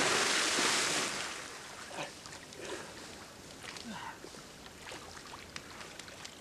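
A person plunging into a creek with a big splash: a loud rush of spraying water that fades over about two seconds, followed by faint splashing and lapping as he moves in the water.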